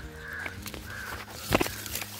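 A crow cawing three short times in the first second, with one sharp knock about a second and a half in, like the phone brushing against branches.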